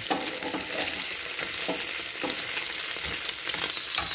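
Boiled beef bone pieces sizzling and crackling steadily in their rendered fat in a frying pan, pushed around with a slotted plastic spatula.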